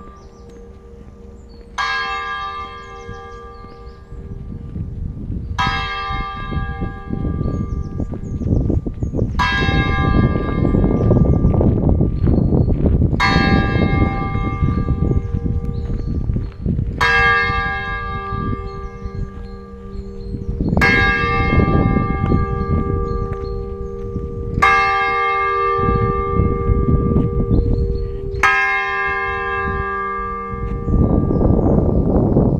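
Church bell hung in a freestanding wooden bell frame, tolling slowly: eight evenly spaced strokes, one about every four seconds. Each stroke rings on into the next over a steady hum, with a low rumble underneath.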